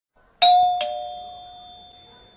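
Two-tone doorbell chime: a ding-dong, a higher note followed by a lower one less than half a second later, both ringing on and fading away.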